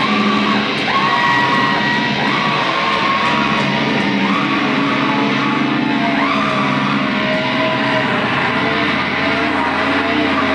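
Live rock band playing loud, distorted music, with long electric-guitar notes that slide up and down in pitch over a dense, steady wash.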